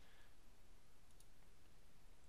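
Near silence with room tone and a faint computer mouse click about a second in.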